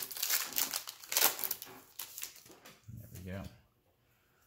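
Pokémon booster pack wrapper crinkling and tearing as it is opened by hand, a string of crackles through the first half. A short murmur of a voice about three seconds in.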